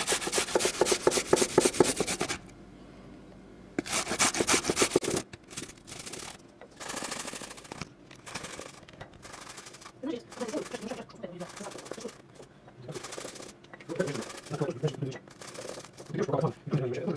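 Garlic cloves grated on a stainless steel box grater: runs of rapid rasping strokes, a long run at the start and another about four seconds in, then shorter bursts with pauses between.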